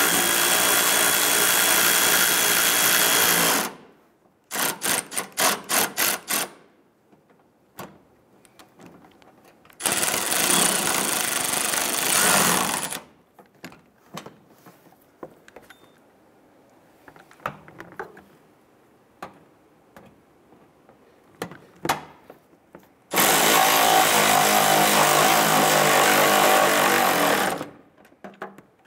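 Power tool spinning a socket on an extension, running down the screws that hold the bumper cover to the fender, in three steady bursts of about three to four seconds each. A quick run of clicks falls between the first two bursts.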